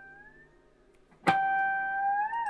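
Electric guitar (Fender Stratocaster) natural harmonic at the fifth fret of the G string, picked about a second in and ringing as a steady high note. Before it, the faint tail of the previous harmonic fades out, pulled slightly sharp by bending the string behind the nut.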